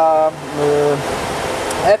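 A man's drawn-out hesitation sounds, a held 'the' then a long 'uh', over a steady background hiss.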